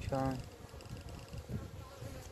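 Honeybees buzzing in a steady hum from a frame lifted out of an open hive.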